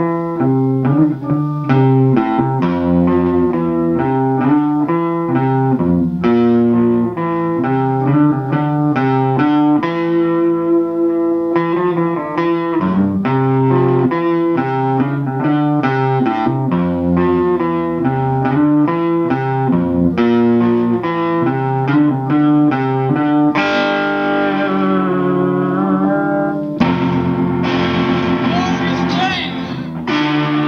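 A rock band playing with electric guitar, a busy riff of quick melodic notes changing several times a second. About 24 seconds in the playing turns denser and brighter.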